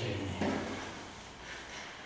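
Chalk knocking once against a blackboard about half a second in.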